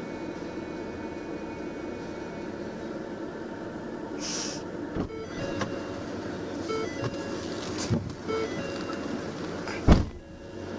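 Steady hum inside a patrol car. A short burst of hiss comes about four seconds in, a click at about five seconds, then a string of short electronic beeps, and a loud thump just before the end.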